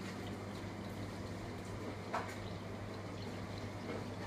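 Quiet room tone: a low steady hum with faint hiss, and a single soft click about two seconds in.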